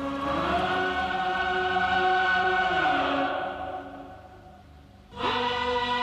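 Choir singing sustained chords. The chord swells in at the start, holds, then fades away toward about five seconds in, and a new full chord comes in sharply just after.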